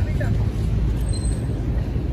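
A steady low outdoor rumble, with a brief voice just after the start.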